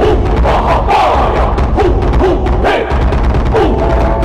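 Buddhist ritual music: voices singing a slow, gliding melody over drum beats and a low rumble.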